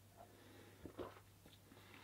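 Near silence: a man drinking beer from a glass, with two faint swallowing sounds about a second in over a faint low hum.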